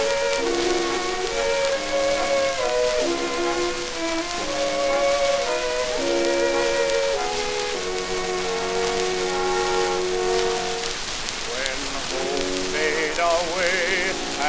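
Orchestral interlude on an early-1920s acoustic Edison Diamond Disc recording: a melody moving in long held notes over sustained chords, with a steady hiss of disc surface noise throughout. Near the end a wavering, vibrato-laden line comes in.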